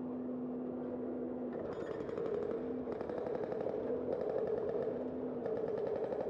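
Bicycle rear freewheel ticking rapidly in three bursts of a second or so each, starting about one and a half seconds in, as the rider coasts between pedal strokes. Underneath is a steady hum of tyre and road noise, and a low steady tone that comes and goes.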